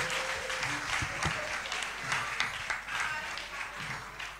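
Audience applauding, the clapping slowly dying down toward the end.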